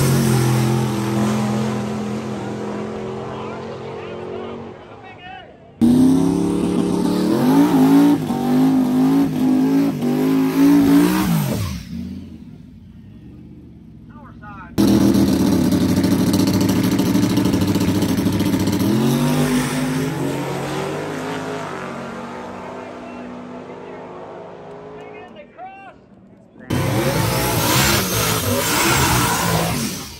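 Drag race cars launching hard off the starting line and pulling away down the strip, the engines very loud at first and fading as they recede, in several short clips cut together. Near the end another car is revving hard at the line with tire smoke.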